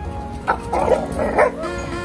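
A dog barking in a quick run of several sharp barks, from about half a second to a second and a half in, at other dogs it doesn't like. Background music plays under it.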